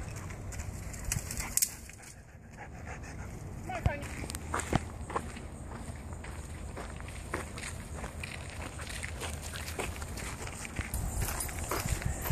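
Footsteps walking on a sandy gravel path: scattered, irregular soft crunches and ticks over a low steady outdoor background.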